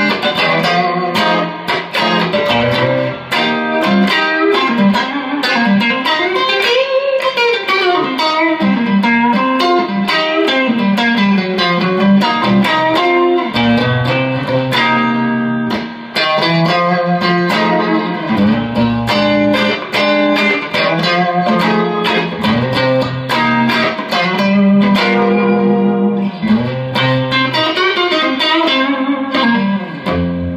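Fender Telecaster electric guitar played straight into a Fender Blues Junior III tube amp, playing funky blues: choppy rhythmic chord stabs mixed with single-note licks and string bends.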